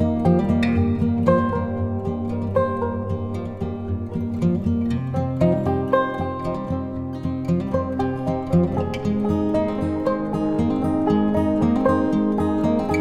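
Instrumental background music: a melody of short notes over held low tones.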